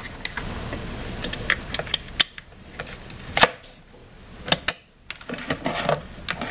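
Hard plastic toy parts of a Play-Doh sled playset being handled: irregular sharp clicks and taps of plastic, the loudest about three and a half seconds in.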